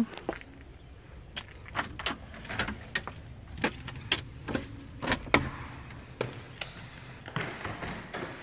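Keys jangling and clicking in a front-door lock as the door is unlocked: a run of irregular sharp clicks and rattles, the sharpest about five seconds in.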